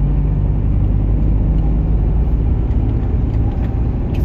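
Heavy truck's diesel engine running steadily at low speed, heard from inside the cab as the truck rolls slowly.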